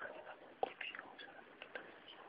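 Pause in a phone call: faint phone-line hiss with a few soft clicks and brief murmurs.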